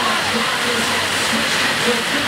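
Steady rush of the FlowRider wave machine's pumped sheet of water, a loud even torrent, with voices of onlookers faintly under it.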